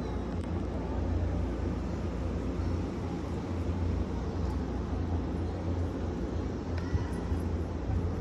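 A steady low rumble of outdoor ambience, with a faint click about seven seconds in.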